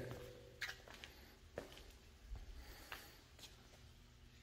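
Near silence: quiet room tone with a few faint, brief clicks spread through it.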